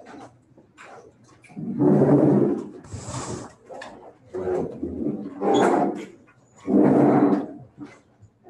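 Three drawn-out, pitched animal cries, loud, with a short hiss between the first two.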